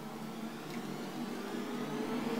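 A steady low hum, slowly growing louder.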